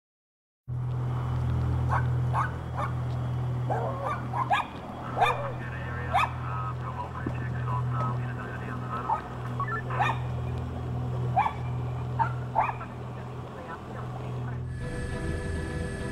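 A dog barking repeatedly in short calls over a steady low machine hum, starting after a moment of silence. Music comes in near the end.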